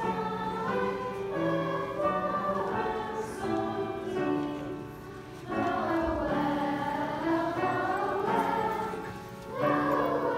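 Children's choir singing a Christmas song together in held notes, with two brief breaks between phrases about five and nine and a half seconds in.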